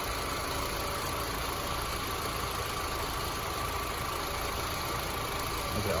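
2007 Honda Civic's 1.8-litre four-cylinder engine idling steadily, heard from beside the open engine bay.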